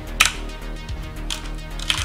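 Computer keyboard keystrokes: a handful of separate key clicks spread over the two seconds, the first the loudest, as a field is retyped.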